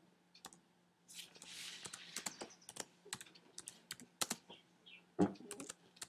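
Typing on a computer keyboard: a run of irregular key clicks as a line of text is entered, with a soft thump near the end.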